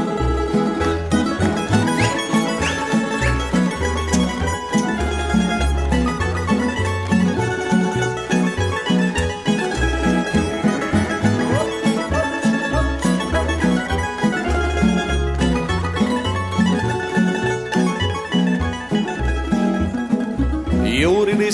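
Tamburica band playing an instrumental break between sung verses: plucked melody over chords and a regular plucked bass line.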